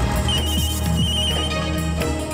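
Mobile phone ringing with an incoming call: a short electronic trill that recurs several times, over background music with sustained low notes.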